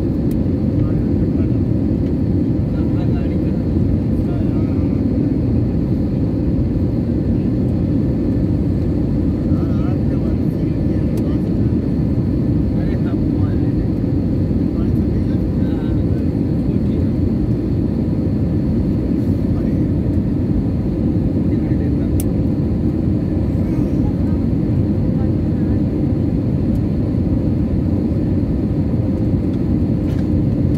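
Jet airliner cabin noise: an even, steady low rumble of engines and airflow heard from inside the cabin, with no change in level.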